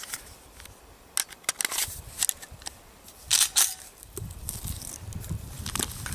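Handling noise from a pistol and condom wrappers: scattered sharp clicks and crinkles, with a low rumble in the second half.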